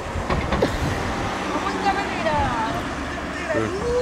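Low, steady motor-vehicle rumble from the quad and the road beside it, with scattered voices. Near the end a rising tone starts and settles into a long, steady held note.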